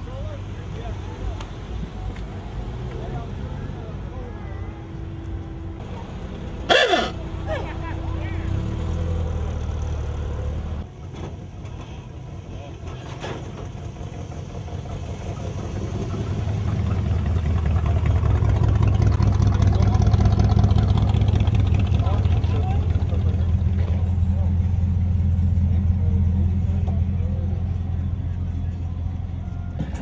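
Cars driving slowly past with low engine rumble and people talking in the background. About seven seconds in there is one brief, sharp sound. From about halfway a deeper engine rumble builds and stays loud.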